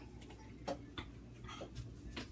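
Light clicks and knocks at irregular intervals, about half a dozen in two seconds, as things are moved about inside an open refrigerator, over a low steady hum.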